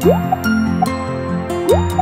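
Bright children's background music with cartoon sound effects: two quick upward-sweeping 'bloop' sounds, one at the start and one near the end, with short dripping blips between them, as animated toy pieces drop and pop into place.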